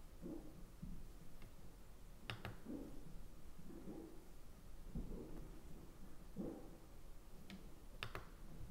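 Quiet room with faint handling noise and a few sharp clicks from a finger pressing the buttons of a digital scale, once about two seconds in and again near the end as the bag is lifted off.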